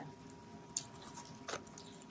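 Faint handling noise from diamond painting kits being moved: two soft clicks or rustles, a light one just under a second in and a stronger one about a second and a half in.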